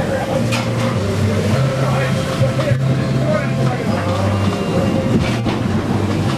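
Steady noise of gale-force wind and sea heard from inside a sailing yacht's pilothouse, with a low hum underneath and a few short knocks.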